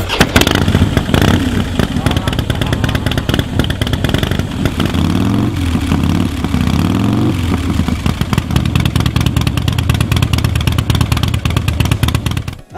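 Loud Harley-Davidson 96-cubic-inch (1600 cc) V-twin, just fired up and running with a deep, pulsing beat. It is revved twice in quick succession about five and six-and-a-half seconds in, then settles back to idle.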